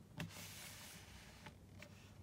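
Packaged product box being handled on a wooden table: a light knock just after the start, then a faint rubbing hiss for about a second and two small clicks.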